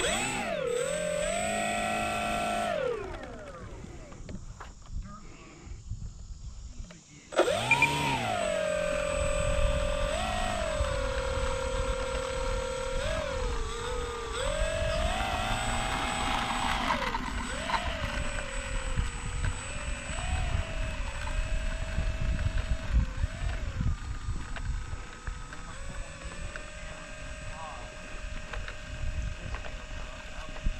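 Small electric motor and propeller whining, its pitch rising and falling with throttle changes. It drops off about three seconds in, cuts back in about seven seconds in with a rising whine, and carries on with repeated small pitch swings.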